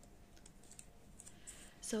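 Faint small clicks and rustles of a wide washi tape being rolled back up on its roll by hand, the tape's sticky side catching and releasing as it winds. A spoken word comes right at the end.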